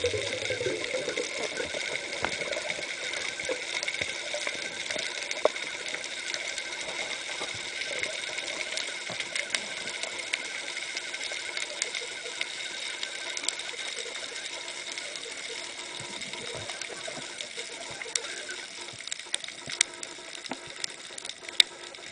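Underwater ambience heard through a diving camera's housing: a steady hiss with a constant high whine, and scattered sharp clicks that come more often near the end.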